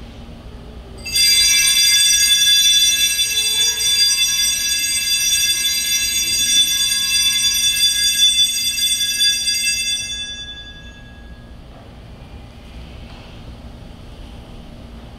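Altar bells rung at the elevation of the consecrated host, marking the consecration: a sustained high ringing that starts about a second in and fades out after about ten seconds.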